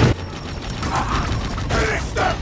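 Sci-fi film battle sound effects: a sharp hit at the start, then the clicking, ratcheting metal-machinery sound of giant robots moving.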